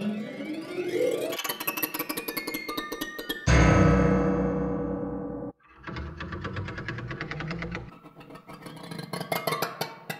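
Eerie, horror-style ambient sound effects from the Piano Noir sampled instrument, recorded from an 1879 Guild & Sons square grand piano and played from a keyboard. A rising swell opens, then a loud, low sustained sound enters about three and a half seconds in, fades and cuts off suddenly, followed by further rapidly fluttering layered textures.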